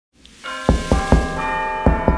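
Knocking on a door: three quick knocks, then another near the end, over sustained ringing bell-like tones.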